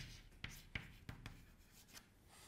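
Chalk writing a word on a blackboard: a series of faint, short taps and scrapes as each letter is stroked on.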